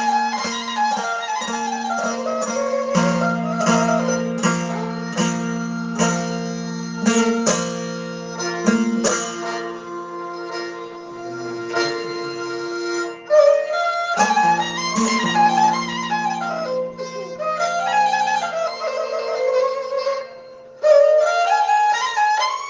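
Traditional Balochi instrumental music: a suroz, the bowed Balochi fiddle, plays gliding, repeating melodic runs over steady drone notes and regular plucked string strokes. The music thins out briefly about two thirds of the way through and again near the end.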